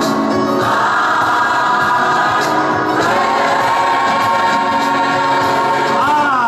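Large mixed gospel choir of men's, women's and children's voices singing in a cathedral, holding long sustained chords. The chord changes about a second in and again halfway through, then is held to the end.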